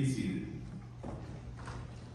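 Quiet room tone in a large hall after the organ stops: a low steady hum, a brief bit of a man's voice right at the start, and a few faint light taps.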